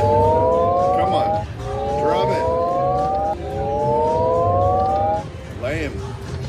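Buffalo Gold video slot machine playing its electronic reel-spin sound effects: three rising sweeps of several tones together, each lasting one and a half to two seconds, with short chirping blips between them and one more near the end, over low casino background noise.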